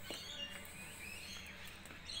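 Faint birds chirping over quiet outdoor background noise.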